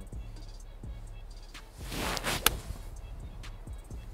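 A golf iron strikes a ball off the tee about two and a half seconds in: a short rush of noise from the swing, then a single sharp crack of impact. Background music runs underneath.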